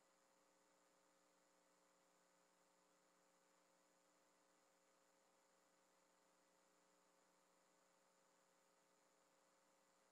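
Near silence, with a faint steady electrical hum in the audio feed.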